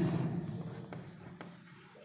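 Chalk writing on a chalkboard: soft scratching strokes with a couple of sharp taps of the chalk about a second in.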